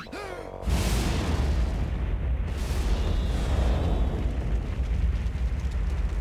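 Short falling tones, then a sudden explosion just before a second in that carries on as a long, heavy rumble of blast and fire.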